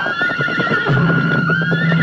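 A troop of horses galloping, dense irregular hoofbeats, with a horse whinnying, over film music.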